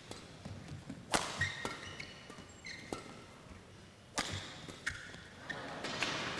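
Badminton rally: rackets strike the shuttlecock about five times as sharp, irregular cracks, with short high squeaks of court shoes on the floor between the shots.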